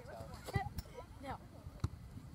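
Faint, indistinct voices in the distance, with one sharp click near the end.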